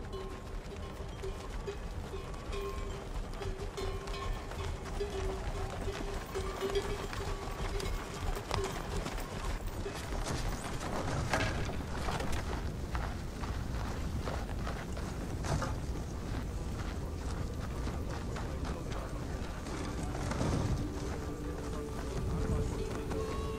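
Film soundtrack: music with one long held note over the hoofbeats of riders' animals. From about ten seconds in, a rush of sharp knocks and running footsteps takes over.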